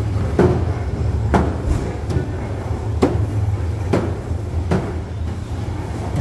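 Footsteps of someone walking with the camera, a dull thump roughly once a second, over a steady low rumble.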